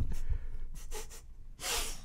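A man's breathing as laughter dies down, ending in a sharp intake of breath near the end.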